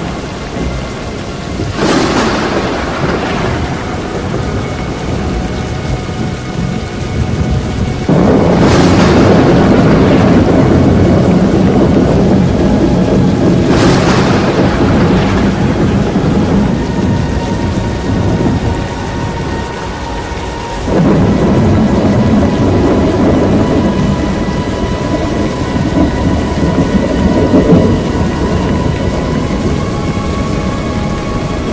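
Thunderstorm: steady heavy rain with four loud thunderclaps, roughly six seconds apart, each rolling on for several seconds.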